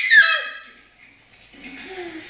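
A high singing voice holds a note and trails off with a falling glide in the first half second. A short lull follows, then a faint voice murmurs near the end.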